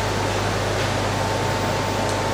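Steady fan noise: an even hiss over a low hum, with a faint high whine held throughout.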